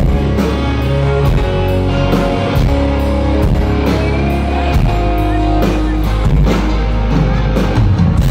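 Live country-rock band playing loud through a PA: electric guitars with sustained notes and a bass line over a steady drum beat.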